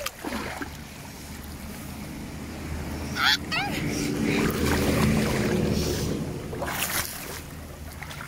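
River water sloshing and splashing close to the microphone, swelling into a low rumble through the middle. Two short rising shouts come about three seconds in.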